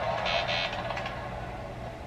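Anime episode soundtrack: a steady electronic music and sound-effect bed with two short, high electronic blips near the start, fading down.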